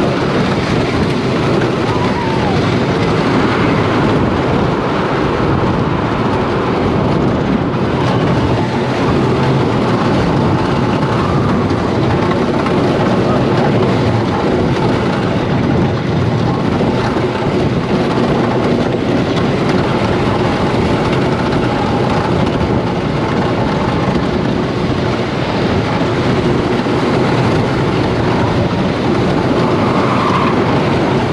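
Joris en de Draak wooden racing roller coaster train running along its track: a loud, steady rattle and rumble of the wheels and cars heard from on board.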